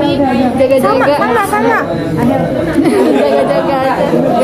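Speech only: two young women chattering, their voices overlapping.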